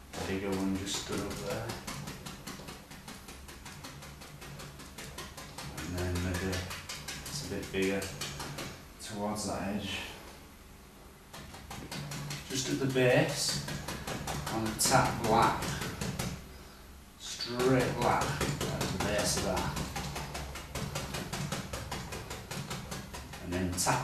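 Quick, irregular taps of a bristle brush dabbed against a stretched canvas, stippling dark paint on, with brief pauses twice.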